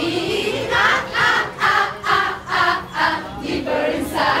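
A group of young people singing and chanting together in unison, in short rhythmic bursts.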